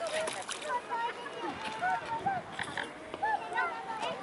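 Waterfowl calling: short rising-and-falling calls from ducks and geese on the water, one after another and overlapping.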